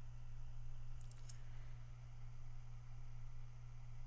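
A computer mouse clicking faintly, a short cluster of clicks about a second in, as a software dialog's confirm button is pressed. Underneath is a steady low electrical hum.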